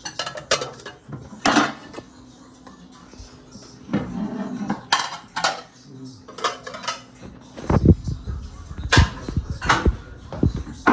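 Dishes and metal kitchen utensils clinking and knocking against each other and the sink, in a string of separate sharp clinks. Near the end, dull low thumps join in.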